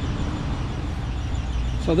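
Steady low rumble of outdoor background noise. A man's voice starts right at the end.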